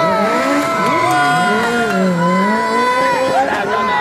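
Car tyres squealing as a vintage-bodied car spins doughnuts on tarmac, with the engine revving: a long, wavering squeal in several pitches at once that slides slowly up and down.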